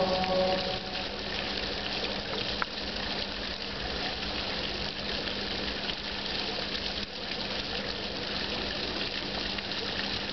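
Fountain water falling and splashing steadily into a stone basin, with a low steady hum running underneath.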